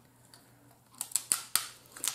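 Snow crab leg shell being cracked and picked apart by hand and fork: a few sharp clicks and snaps in the second half.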